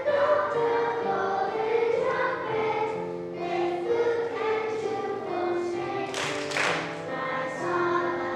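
A children's choir of second and third graders singing a song of praise, accompanied on piano.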